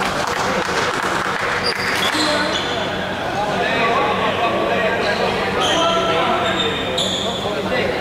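Indistinct chatter from players and onlookers in a sports hall. Short, high-pitched squeaks from court shoes on the hall floor come a few times, mostly in the second half.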